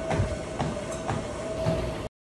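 Steady mechanical rumble with a steady hum above it, and soft thumps about twice a second.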